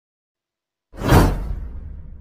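Dead silence, then about a second in a whoosh sound effect swells quickly and fades away over about a second and a half, the kind of swoosh that goes with an on-screen subscribe-button animation.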